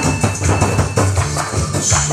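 Korean buk barrel drums beaten with sticks in a fast rhythm, played along with a loud recorded music track that has a steady beat and jingling percussion.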